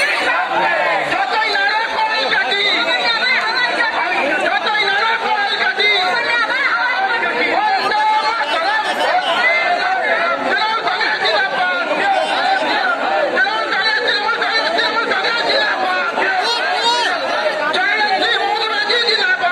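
Crowd chatter: many people talking at once close around the microphone, a dense, steady babble of overlapping voices.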